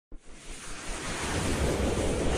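A rushing whoosh sound effect with a low rumble underneath, swelling steadily in loudness, from an animated logo intro.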